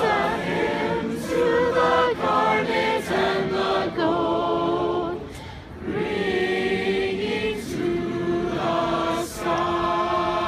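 A large mixed group of marching band members singing a slow hymn a cappella in harmony, in sustained phrases with a short breath pause about five and a half seconds in.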